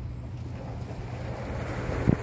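Small utility cart driving over a sandy yard: a steady low hum from its motor with the rumble of the ride.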